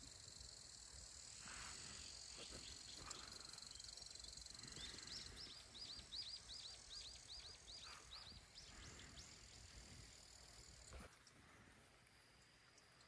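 Near-silent outdoor ambience: a faint, steady, high insect drone. Midway a small bird repeats a short hooked chirp about three times a second for a few seconds. The drone stops abruptly near the end.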